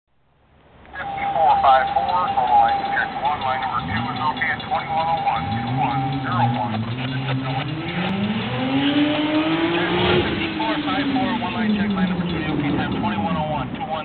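A road vehicle's engine rising in pitch as it comes closer, passing close by about ten seconds in, then falling in pitch as it moves away.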